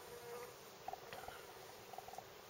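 Faint insect buzzing, typical of a bee flying near the microphone, with a few small faint ticks.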